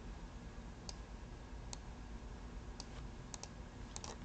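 About six faint, spaced single clicks from a computer keyboard and mouse as text is cleared from a document.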